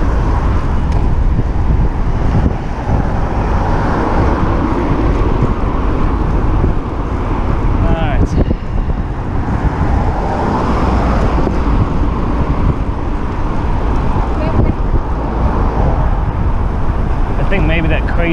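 Wind rushing over the microphone of a handlebar camera on a moving bicycle, a steady low rumble, with road traffic.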